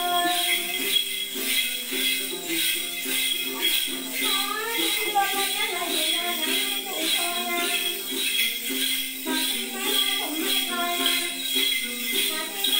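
Then ritual singing: a voice singing over a plucked đàn tính long-necked lute, with a shaken bunch of small jingle bells keeping a steady rhythm.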